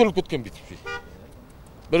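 A single short vehicle-horn toot about a second in, just after a man's voice breaks off.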